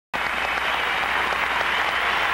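Arena crowd applauding steadily, a dense wash of many hands clapping.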